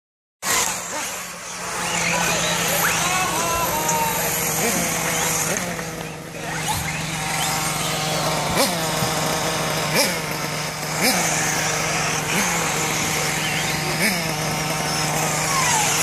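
Several 1/8-scale off-road RC buggies racing on a dirt track, their motors repeatedly rising and falling in pitch as they accelerate and brake through the corners. A steady low hum runs underneath.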